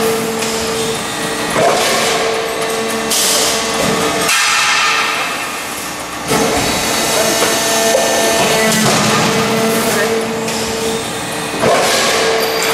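A 400-ton hydraulic press with a progressive die runs, stamping steel strip into muffler caps. Its hydraulics hum steadily, and the die strikes in repeated strokes a few seconds apart, each bringing a sudden rise in level.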